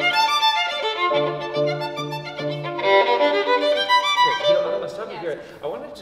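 Violin playing a legato phrase of sustained notes with piano accompaniment; the playing stops about four and a half seconds in.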